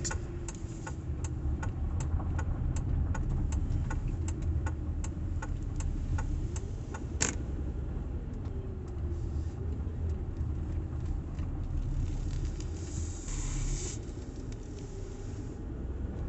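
Car cabin noise: a steady low engine and road rumble, with a run of faint regular ticks, about two a second, for most of the time and one sharper click about seven seconds in.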